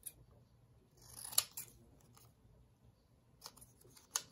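Scissors snipping through paper: a few separate short cuts, the sharpest about a second and a half in and another near the end.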